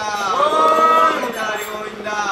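Men's voices chanting a devotional phrase together. Each call slides up into one long held note, and the next call begins near the end.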